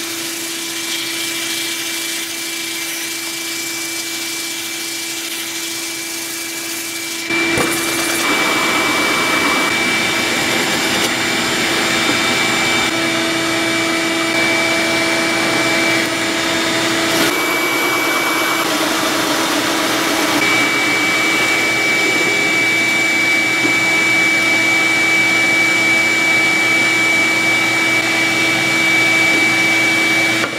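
Benchtop drill press running steadily with a large hole saw cutting into a softwood block. The steady whine steps up louder about seven seconds in, as the saw bites.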